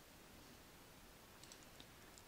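Near silence: room tone, with a few faint computer mouse clicks near the end.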